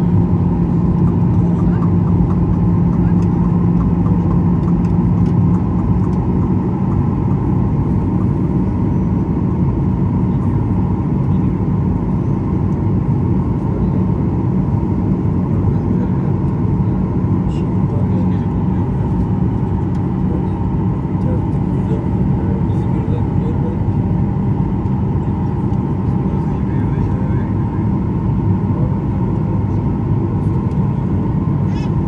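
Jet airliner cabin noise from the turbofan engines during descent: a loud, steady rumble with a low hum and a faint higher whine. The hum shifts slightly about six seconds in.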